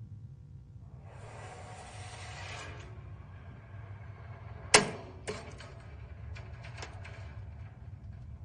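A single loud gunshot from a recording of an indoor shooting range, played over the hall's speakers, followed half a second later by a smaller knock and then a few faint clicks. A soft hiss is heard for a couple of seconds before the shot.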